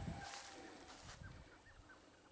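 Faint outdoor ambience: a bird chirping in a quick run of short notes, over a low rumble that fades during the first second.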